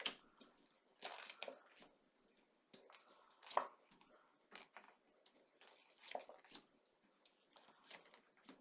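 Tarot cards being shuffled and handled: faint, irregular soft rustles and light taps, the clearest about a second in and midway through.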